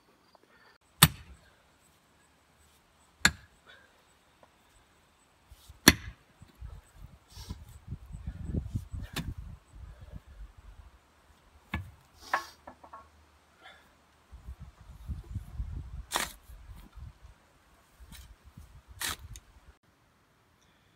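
Hand digging with a shovel in stony soil: a handful of sharp strikes of the blade into earth and stones, with stretches of low scraping and dirt being worked loose in between.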